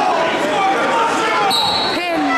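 Crowd of spectators shouting and yelling during a wrestling bout on a gym mat. About a second and a half in, a short, shrill, steady whistle blast, a referee's whistle, cuts through the yelling.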